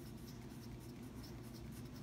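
Wooden pencil writing on a paper worksheet: a faint scratching as words are written out.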